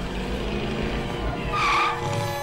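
A DeLorean car driving away, its engine rumbling steadily under road noise, with a short tyre squeal about one and a half seconds in.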